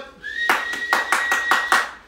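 A single held whistled note with about seven quick hand claps over it, roughly five a second, calling a Labrador puppy back with a retrieved dummy.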